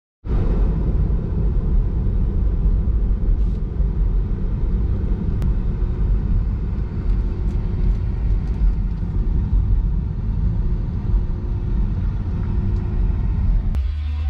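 Car driving along a road, heard from inside the cabin: a steady low rumble of road and tyre noise.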